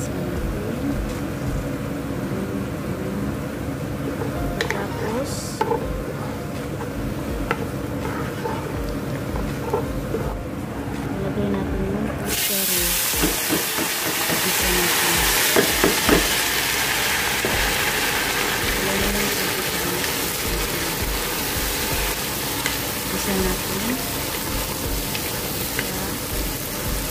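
Onions frying in oil in a pot, stirred with a wooden spatula. About halfway through, lentils are tipped in from a bowl and a loud hissing sizzle starts suddenly, going on as they are stirred.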